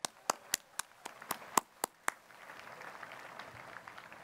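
One person's hands clapping close to the microphone, about nine sharp claps over two seconds, with fainter applause from a crowd joining in and then fading away.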